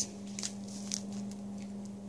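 Faint rustles and small clicks of small plastic bags being handled, over a steady low hum.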